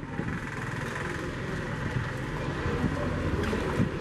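Steady outdoor street background noise with a low rumble, like traffic.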